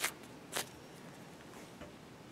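Foam squishy toy, chilled in a freezer, squeezed hard between the hands, giving two short soft puffs of air about half a second apart near the start, then only a faint hiss.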